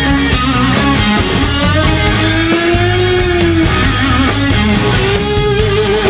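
Live blues-rock band: a lead electric guitar on a worn Fender Stratocaster plays over bass and drums. The guitar holds long sustained notes that bend slightly in pitch, one about two seconds in and another near the end.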